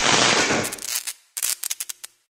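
An explosion-like sound effect: a loud burst of noise that dies away over about a second, followed by a quick run of sharp crackling pops.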